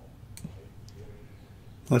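Two faint computer mouse clicks about half a second apart.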